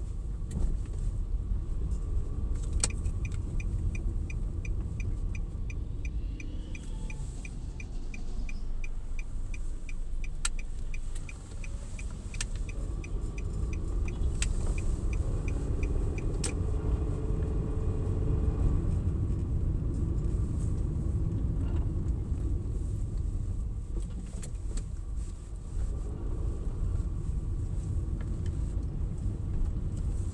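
Car cabin noise while driving: a steady low rumble of engine and tyres on the road. A turn-signal indicator ticks about three times a second from about three seconds in to about the middle, with a few sharp knocks now and then.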